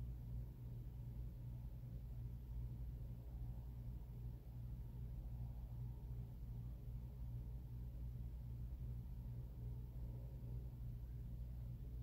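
Quiet room tone: a steady low hum with no distinct sounds.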